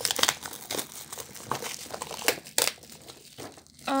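Plastic shrink wrap on a spiral-bound planner crinkling as fingers pick at and pull it, with a few sharp crackles; the wrap is clinging tight and hard to get off.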